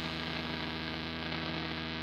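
Steady electrical hum with a stack of buzzing overtones, holding at an even level after the music has stopped.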